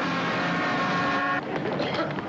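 Road traffic in a jam: engine noise with steady pitched tones held over it, changing abruptly to a different, choppier traffic sound about one and a half seconds in.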